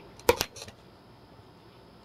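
A single sharp smack of a man punching himself in the face, about a quarter second in, with a fainter tap just after; it sounds hard and woody, as if his cheek were made of plywood.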